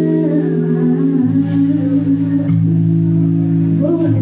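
Live band playing a slow song: held low chords that change a few times, with guitar over them.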